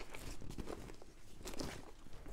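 Faint handling sounds: a few light clicks and rustles as small items are moved about on a work surface.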